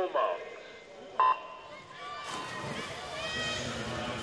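Electronic race-start signal sounding once, a short loud tone about a second in, at the start of a swimming final. About a second later, crowd cheering and the splashing of the swimmers rise and carry on.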